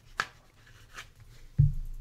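Hands handling a trading card and its clear plastic sleeve: two short crisp plastic rustles as the card slides into the holder, then a dull thump about one and a half seconds in.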